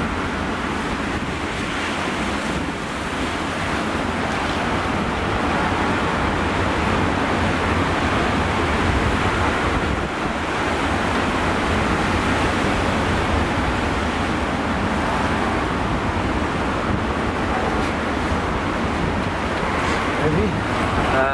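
Storm-driven sea, heavy surf breaking and washing over rocks in a steady, unbroken wash, with strong wind rumbling on the microphone.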